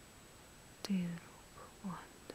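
A woman's soft, whispery voice says a word or two slowly, with a sharp click as the first word starts.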